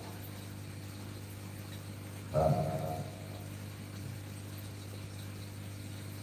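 Steady low electrical hum from the microphone and sound system. A single short vocal sound, under a second long, comes a little over two seconds in.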